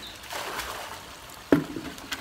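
A bucketful of liquid poured out of a plastic bucket, splashing into a pond, then a single sharp knock about one and a half seconds in as the bucket is set down on the stone pond wall.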